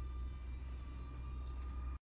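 Faint steady high whine of a DJI Neo mini drone's propellers in flight, over a low rumble of wind on the microphone; the sound cuts off abruptly at the end.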